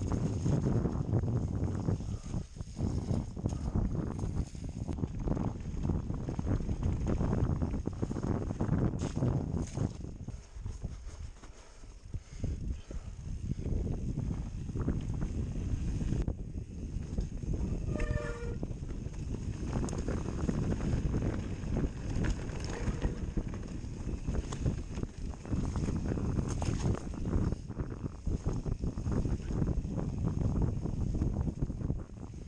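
A mountain bike ridden over a rough, muddy trail: tyre rumble and the bike rattling over bumps, with wind buffeting the on-board camera's microphone. It eases briefly around twelve seconds in, and a short pitched squeal or call sounds about eighteen seconds in.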